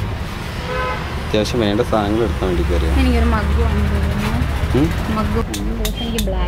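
People talking, with one long drawn-out vocal sound in the middle, over a low rumble that swells for a second or two.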